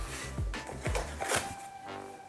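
Background music with steady tones and falling bass sweeps. A few short rustles of cardboard packaging being handled sound over it.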